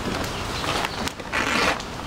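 Fresh banana leaf rustling and ripping as it is handled and pulled from the plant, in short bursts, with one louder, longer rip a little after a second in.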